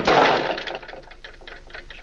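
A loud noisy sound fades over the first half second. Then come light, irregular clicks and rattles of small objects being handled on a table.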